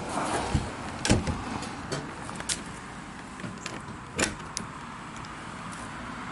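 About half a dozen sharp knocks and clicks, spread unevenly, from wooden boards and metal hardware being handled and fitted on a plywood wood-chipper chip box, over a steady background hiss.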